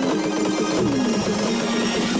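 Sped-up video game audio: a loud, dense rattling noise over a held low tone that slides down in pitch about a second in.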